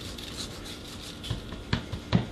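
Hands rubbing dry seasoning into raw steaks on a metal sheet pan: a quiet rubbing of palms on meat, with a few soft knocks in the second half.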